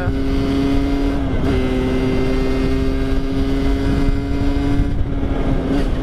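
Rieju MRT 50's two-stroke single-cylinder engine with its derestricted stock exhaust, running at a steady cruising speed, its pitch dipping briefly about a second and a half in before holding steady again. Wind rumbles on the microphone underneath.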